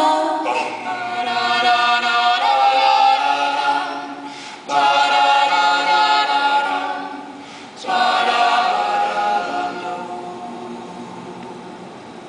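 Mixed-voice student a cappella group singing a wordless passage of held chords in close harmony. It comes in three long phrases, each swelling and then fading away, the last dying down near the end.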